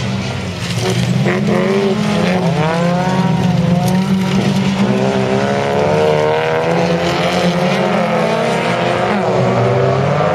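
Several folkrace cars racing, their engines rising and falling in pitch as they accelerate and back off, with several engine notes overlapping.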